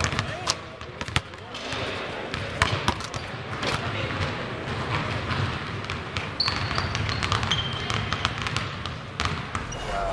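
Several basketballs bouncing irregularly on a hardwood court in a large arena during a shootaround, with indistinct voices underneath.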